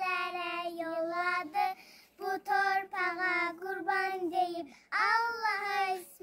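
Young children singing an Azerbaijani patriotic song together without accompaniment, in long held phrases with short breaks between them.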